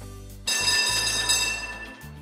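Cartoon tram's electric bell ringing as it pulls up to a stop: a continuous ring starting about half a second in and fading near the end, over a low steady hum.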